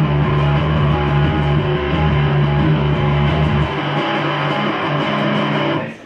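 Loud live rock played on an electric bass guitar. The deep low notes drop away a little past halfway, and the music stops abruptly at the very end as the song finishes.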